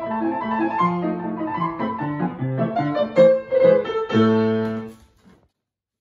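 Grand piano playing a quick run of notes that ends on a loud held chord about four seconds in. The sound cuts off suddenly just after five seconds in.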